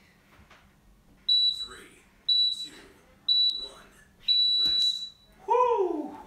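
Interval workout timer beeping the countdown to the end of a work interval: three short high beeps a second apart, then a longer beep marking the switch to rest. A person's voice follows near the end.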